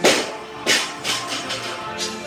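A 52.5 kg barbell loaded with bumper plates dropped from overhead onto the gym floor: a loud impact right at the start, a second bounce about two-thirds of a second later, then smaller knocks as it settles, over background music.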